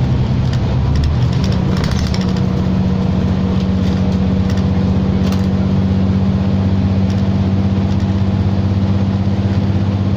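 New Flyer XD60 articulated diesel bus heard from inside the cabin while driving: a steady engine and drivetrain drone with road noise. The engine note shifts and settles about two seconds in, with a few light rattles from the interior.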